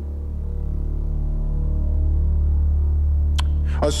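Low, steady drone of a dramatic background score, with faint held tones above it, swelling slightly about two seconds in. A short click comes near the end, just before a man starts speaking.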